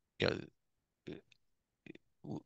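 A man's voice on a video call saying "you know", then a halting pause broken by a few short mouth sounds or clipped syllables, with dead silence between them.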